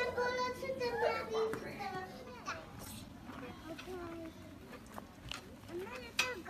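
Young children's high-pitched voices, wordless chatter and calls while playing. The voices are loudest in the first couple of seconds, then come fainter and scattered.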